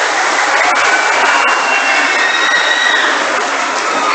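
Steady crowd applause from an assembly of students, clapping with hands only, with a few faint high voices showing above it.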